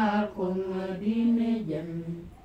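Unaccompanied voices singing a slow chant-like song, long held notes stepping down in pitch, the phrase fading out near the end.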